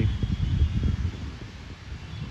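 Wind buffeting the microphone: an uneven low rumble that eases off after about a second.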